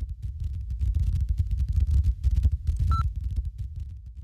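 Deep, throbbing low rumble under the GoPro logo intro, with faint crackle and a brief high beep about three seconds in.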